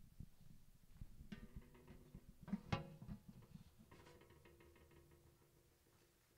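Faint rustling and light knocks of sheet music being handled at a music stand, with one sharper knock near the middle and a brief, faint pitched ring about a second in and again about four seconds in.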